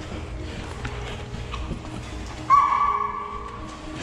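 A Cane Corso puppy gives one short, high whine about two and a half seconds in, a steady pitch that sags slightly before it stops.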